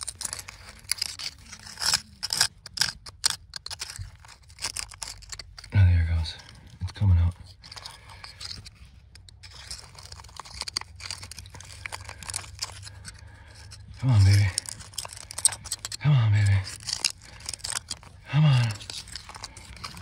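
Thin metal pick scraping and picking at hard clay and rock around a loose Herkimer diamond crystal, working it free: a quick run of sharp scratches and clicks, densest in the first few seconds, then coming again in short spells.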